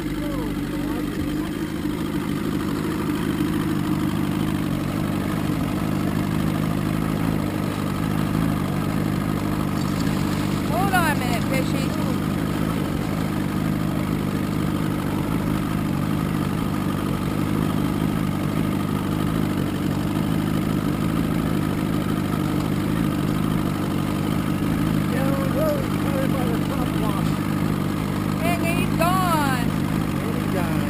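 Boat motor running steadily with a low, even drone.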